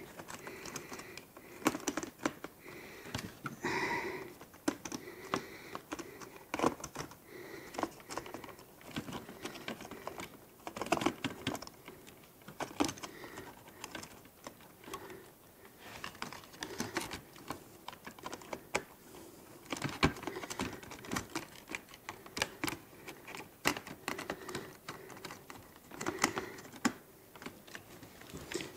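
Irregular light clicks and taps of hard plastic parts and small hand tools, as hands fit a gimbal and work among the screws and wiring inside an opened FrSky Taranis X9D radio transmitter.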